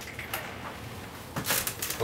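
Glass storm door being opened: a few latch and handle clicks, then a louder cluster of rattling and clatter near the end as the door swings open and someone steps through.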